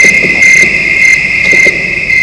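Insects chirring in a loud, steady high trill, with a higher chirp repeating about twice a second.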